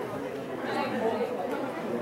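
Several people talking and calling out over one another, with no clear words.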